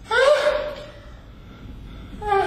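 A man's short, loud cry that bends upward in pitch just after the start and fades within about half a second: a yell during a staged fight.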